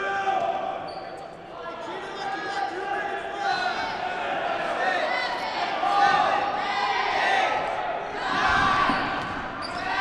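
Rubber dodgeballs bouncing on a hardwood gym floor amid players' shouts and calls, echoing in a large hall.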